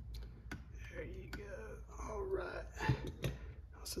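A few sharp clicks and taps from a hex driver and small RC parts being handled and set down, with quiet muttered speech in the middle.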